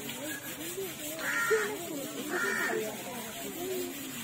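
Water from a hose spraying onto an elephant as it is bathed, under men's voices, with two short harsh calls about a second apart near the middle.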